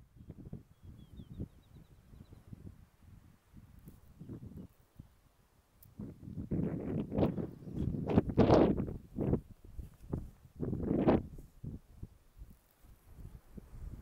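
Gusty wind buffeting the microphone: an irregular low rumbling rush that comes in surges, with the strongest gusts in the middle and again a little later.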